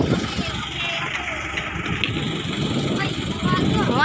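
Outrigger boat's engine running steadily, with people's voices over it.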